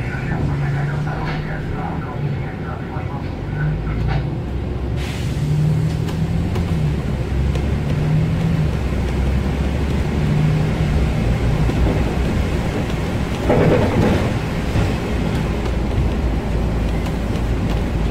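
Inside a Volvo 7000A articulated city bus on the move: its engine and drivetrain drone steadily, the engine tone rising and falling as the bus pulls along, with road noise under it. A short, louder burst of noise about three-quarters of the way in.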